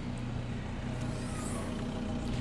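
Steady low engine hum of an idling vehicle, even throughout, with no distinct click or thud from the hatch.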